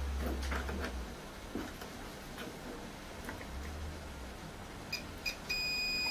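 Digital multimeter's continuity beeper: two short high beeps near the end, then a steady tone as the test probes hold contact across the mains fuse, showing the fuse is intact. Before that, faint clicks and light knocks of the probes being handled on the board.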